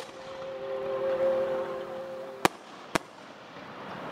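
Fireworks display: two sharp bangs of shells bursting about half a second apart, over a held note of the accompanying music that stops at the first bang.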